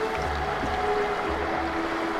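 Background music: sustained held notes over a pulsing low bass.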